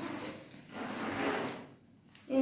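Zipper on a nylon backpack being pulled along its track: one raspy stroke about a second long in the middle, then it stops.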